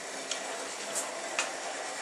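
Model train running on the layout track: a steady faint hum and hiss with a few light clicks.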